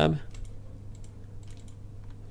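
Computer keyboard keys tapped a few times in quick succession, typing a name, over a low steady hum.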